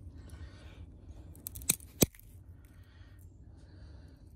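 A thin woody plant stem snapped by hand in a snap test for whether it is still alive: two sharp cracks a fraction of a second apart, the second louder, about two seconds in.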